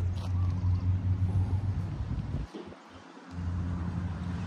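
A steady low rumble that cuts out for under a second about two and a half seconds in, then returns.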